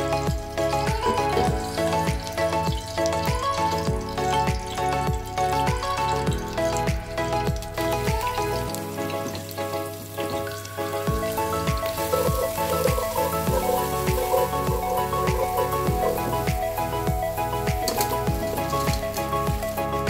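Crushed garlic sizzling in hot oil in a pot, under background music with a steady beat.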